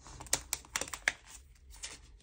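Photocards being slid into the clear plastic pocket pages of a ring binder: a quick cluster of crisp plastic clicks and crinkles, densest in the first second.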